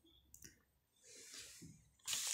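Near silence: room tone, with a faint click about a third of a second in and a soft rustle or breath a second later.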